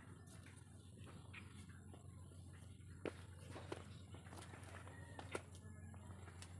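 Faint footsteps of a person walking, with a few scattered light ticks and taps, the sharpest about three seconds in and another near five seconds, over a low steady hum.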